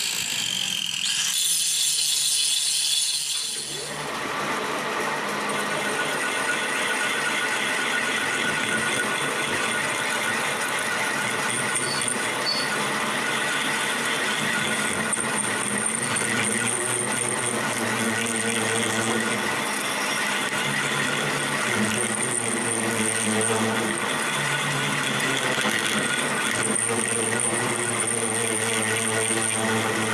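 An angle grinder grinds steel for the first few seconds, then stops. After that a metal lathe runs steadily, its cutting tool boring a steel workpiece spinning in the chuck.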